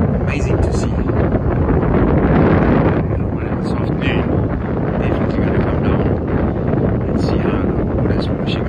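Wind buffeting the microphone in a loud, steady, rough rumble, with a few short hisses higher up.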